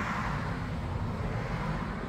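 A car driving by on the street: a steady rumble of engine and tyres.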